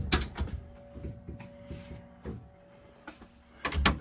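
Wooden cabin doors and a cupboard door being opened and handled: a loud knock at the start followed by a run of clicks and rattles, a few light knocks, then another cluster of knocks shortly before the end.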